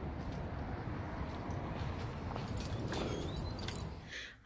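Outdoor ambience: a steady low rumble with faint footsteps on pavement, and a brief faint high whistle a little before three seconds in.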